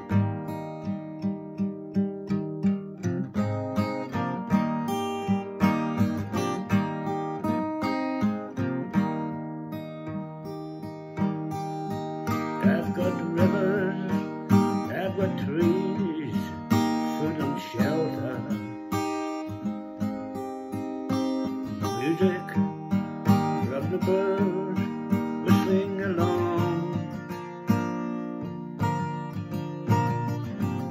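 Epiphone Hummingbird acoustic guitar strummed in a steady rhythm, chords ringing between strokes, in an instrumental passage with no words sung.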